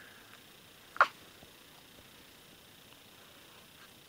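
A single brief, sharp sound about a second in, over otherwise quiet room tone.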